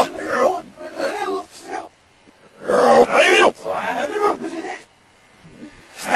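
A man's speech played backwards: two stretches of garbled reversed talk, with a short pause about two seconds in and a quieter gap near the end.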